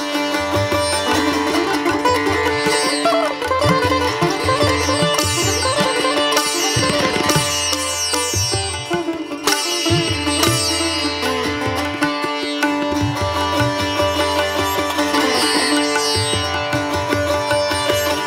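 Instrumental background music in an Indian classical style: a plucked string melody with sliding notes over a steady drone.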